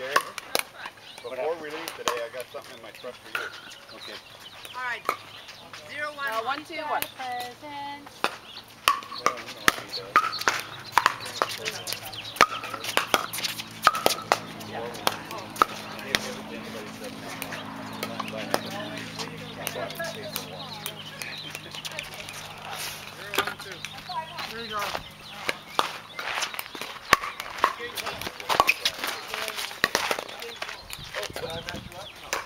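Paddles striking a plastic pickleball, sharp pops in quick runs during rallies, with the ball bouncing on the hard court between hits.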